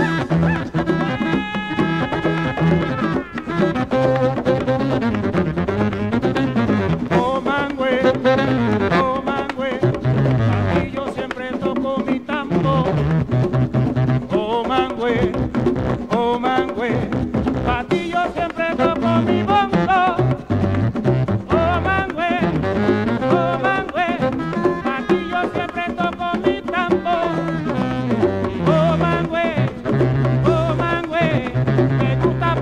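Instrumental Latin jazz: hand drums and other percussion keep a steady groove under a stepping bass line, while a saxophone plays a winding melody with some long held notes.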